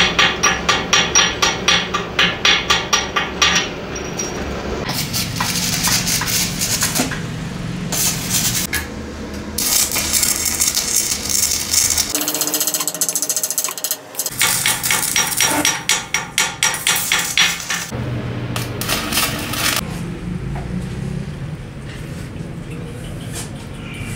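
A welder's chipping hammer rapping on steel weld beads on a trailer axle beam, knocking off slag in quick bursts of strikes. Around the middle there is a short stretch of stick-welding arc crackle.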